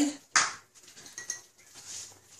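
A sharp clink of kitchenware, then faint small clinks and taps as utensils and containers are handled at a metal mixing bowl.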